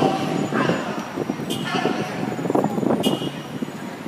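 Street traffic, a motor vehicle running close by, under the overlapping chatter of a crowd of protesters, with two short high hisses about a second and a half and three seconds in.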